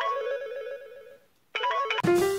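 Phone alarm ringtone: a short melody of quick, plucked-sounding notes that rings, fades out about a second in, and starts again shortly after.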